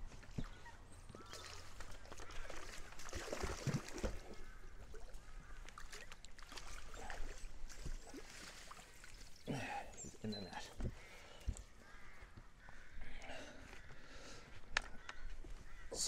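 A hooked trout splashing at the surface as it is played in and drawn into a landing net, with short pitched calls now and then.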